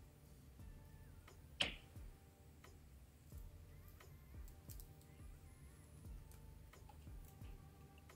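Faint, scattered clicks of pearl beads knocking against each other as they are handled and threaded onto fishing line, with one sharper click about a second and a half in.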